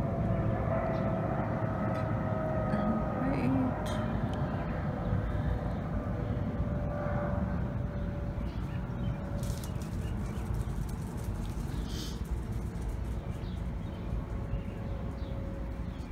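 Outdoor background sound: a steady low rumble with a long droning tone that slowly falls in pitch, and a few short bird chirps.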